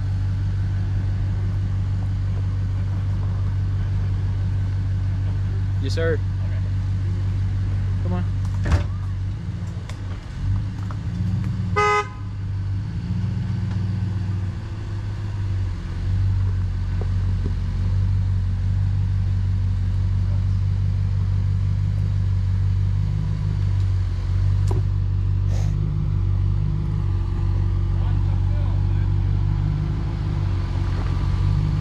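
A lifted full-size pickup truck's engine running at a slow crawl as it creeps down a rutted dirt trail, its note changing for a few seconds around the middle as it works over the ruts. A short horn toot sounds about twelve seconds in.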